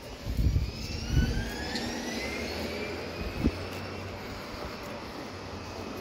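A motor whine rising steadily in pitch for about two seconds, several tones climbing together, over a steady low rumble. Low thumps come near the start.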